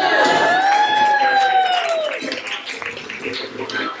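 Small crowd cheering as a dance ends: a long whoop that rises and falls in pitch over about two seconds, then scattered clapping and voices.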